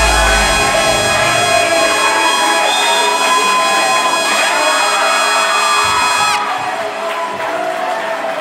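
Loud walk-up music with held, sustained notes, playing over a cheering crowd. The music cuts off about six seconds in, leaving the crowd's cheering and voices.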